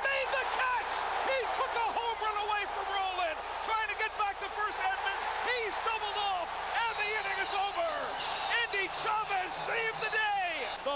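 A man's excited radio play-by-play commentary on a baseball catch, carried on over a continuous crowd noise.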